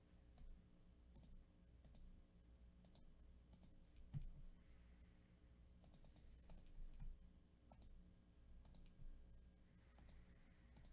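Faint computer mouse clicks, irregular, about one or two a second, with a soft thump about four seconds in.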